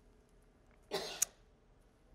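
A single short cough about a second in; otherwise low room tone.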